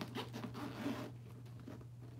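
Zipper on a leather handbag being pulled in about the first second, then quieter rustling as the bag is handled.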